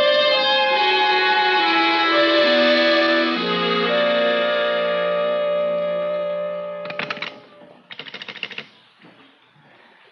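Music bridge: a run of sustained notes stepping downward, settling on a held low chord that fades out about seven seconds in. Two short rattling bursts follow, about a second apart.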